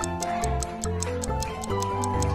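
Fast ticking-clock countdown sound effect, about five ticks a second, over light background music, marking the quiz timer running out.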